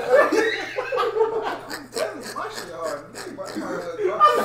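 Several men laughing and chuckling, mixed with bits of indistinct talk.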